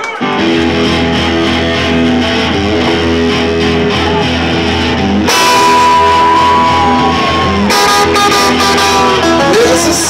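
A live rock band with several electric guitars over bass plays the instrumental intro of a song, kicking in just after the start. About five seconds in, a lead guitar holds one long high note and bends it up slightly. Near the end, sharp bright hits come in over the band.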